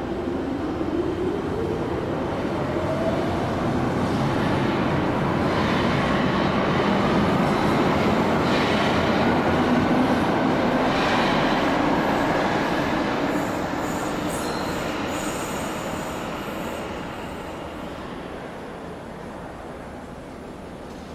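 DUEWAG U2-series Stadtbahn train pulling out of an underground station: the traction-motor whine rises steadily in pitch as it accelerates and the running noise grows louder, then fades away over the last several seconds as the train leaves.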